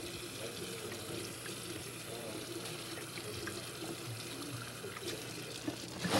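Tap water running steadily into a sink as someone washes their hands, with faint voices in the background.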